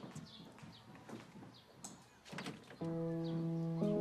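Background score of sustained held chords, entering softly about three-quarters of the way through and changing chord shortly after, over a few faint knocks and clinks.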